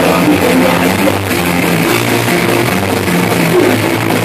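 Punk rock band playing live and loud: electric bass, guitar and drum kit, with a moving bass line.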